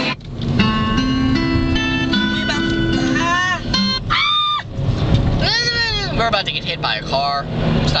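Music from a car stereo starting a new song. The sound dips just at the start, steady held notes follow, and from about three seconds in a voice sings long arching notes, all over the car's low road rumble.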